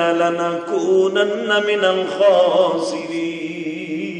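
A man's voice chanting a long, wavering melodic line in the sung style of a Bengali waz sermon, amplified through microphones. The held notes weaken near the end.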